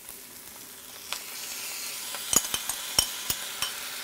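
Sauce sizzling as it hits egg noodles in a hot wok, the hiss building about a second in, with sharp crackles and pops from about two seconds in.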